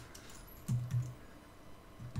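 Soft typing on a computer keyboard as code is entered, with two brief low hum-like sounds about a second in.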